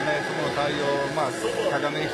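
Voices over the steady background noise of a baseball stadium crowd.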